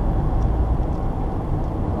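Dodge Challenger SXT's 3.6-litre V6 heard from inside the cabin, pulling hard in second gear as the driver revs it out, with steady road noise underneath.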